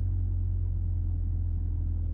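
Audi TTS Mk2's turbocharged 2.0-litre four-cylinder, fitted with a full catless exhaust, droning steadily and low in pitch, heard from inside the cabin while driving.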